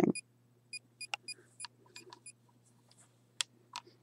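A digital blood pressure monitor beeping as it is operated: a quick run of short, high electronic beeps over the first two seconds or so, followed by a few sharp clicks and taps. A faint steady low hum lies underneath.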